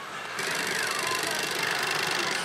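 Pachislot machine's clock-face gimmick rattling hard and fast, its vibration setting in suddenly about half a second in, with the machine's electronic sound effects gliding behind it.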